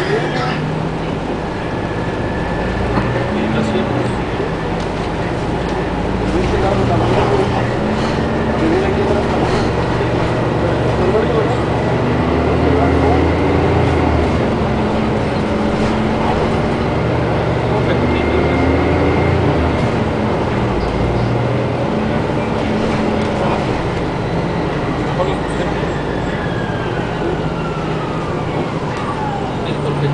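Orion VII Next Generation diesel-electric hybrid bus heard from inside while driving: a steady drivetrain hum whose pitch steps up and down with speed. Over the last few seconds a high whine falls smoothly in pitch as the electric drive slows.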